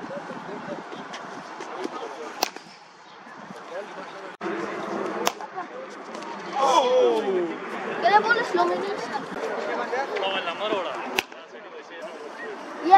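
Sharp single cracks of a cricket bat striking the ball, three of them a few seconds apart, over a background of voices. From about halfway through, loud calling voices.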